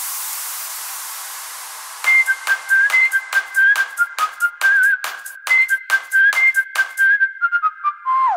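Breakdown of a club dance track in a DJ mix: a noise sweep fades out over the first two seconds. A whistled melody then comes in over thin, bass-less percussion hits, about four a second, which speed up into a roll near the end.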